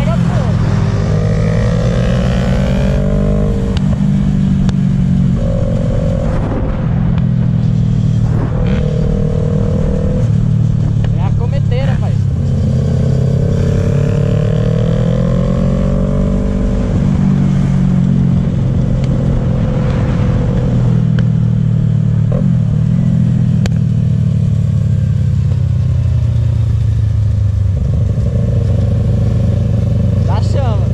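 Yamaha MT-03 motorcycle engine under way, recorded from the rider's position, rising in pitch under acceleration and dropping at gear changes several times over. Steady wind and road noise runs underneath.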